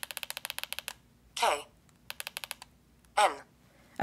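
Blaze EZ player responding to repeated presses of its arrow key: two quick runs of fine, evenly spaced ticks, one near the start and one around the middle. Each run is followed by a short falling spoken syllable.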